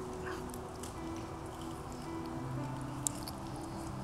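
Quiet background music of soft held chords that shift pitch every second or so, with a brief faint click about three seconds in.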